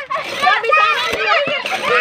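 Children and women chattering and calling out over one another, several high-pitched voices at once.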